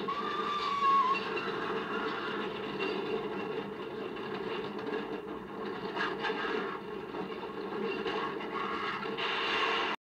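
Television programme sound played through a TV set's speaker and picked up in the room: a steady rushing noise with a short whistle-like tone in the first second.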